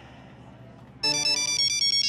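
A mobile phone ringtone starts about a second in: a quick electronic melody of stepping notes.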